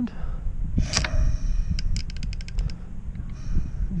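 Socket ratchet clicking in a quick run of about ten clicks, a little under halfway in, while a single-cylinder motorcycle engine with its spark plug out is turned over by hand at the crank bolt towards top dead centre. A sharp knock comes about a second in, and a low rumble runs under it all.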